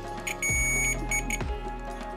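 Digital multimeter's continuity buzzer beeping as a probe touches the headphone jack's terminal: one beep of about half a second, then two short beeps. The beep signals continuity: the wire under test is connected to that terminal.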